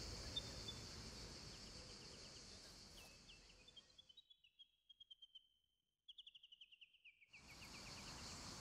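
Faint outdoor ambience that fades to near silence about four seconds in and comes back near the end. Through the middle runs a faint high trill of rapid chirps, slowly falling in pitch.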